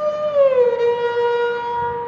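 Sarangi being bowed on one long sustained note. The note slides down in pitch about half a second in, then holds steady.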